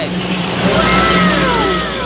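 A motor vehicle engine passing, its pitch falling smoothly over about a second, over a steady low engine hum.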